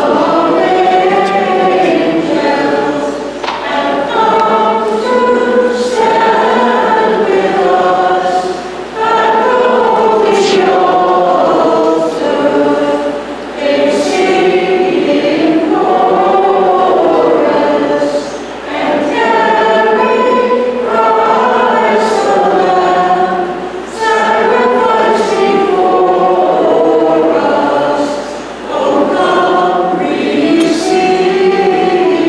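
A church choir singing a hymn in long sung phrases, with short breaks for breath every four to five seconds.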